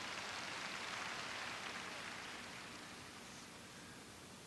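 Faint applause from a congregation, swelling in the first second and then slowly dying away.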